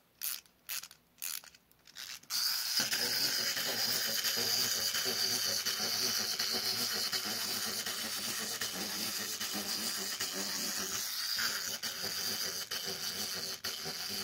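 Plastic clockwork wind-up toy: a few ratchet clicks as it is wound, then from about two seconds in its spring motor runs with a steady gear whir as it walks.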